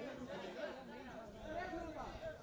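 Faint background chatter of several voices talking at once, with no single loud sound standing out.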